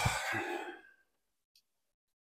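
A man's drawn-out "ugh" trailing off into a breathy sigh during the first second, then near silence.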